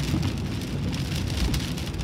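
Heavy rain hitting a car's windscreen, heard from inside the cabin as a dense spatter of small ticks over the low steady rumble of the moving car.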